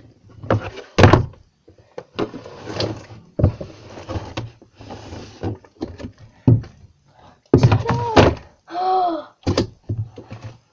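Slime being mixed in a clear plastic box and turned out onto a tabletop: repeated knocks and thumps of the box and the heavy slime against the table, with squishing, rustling noise between them.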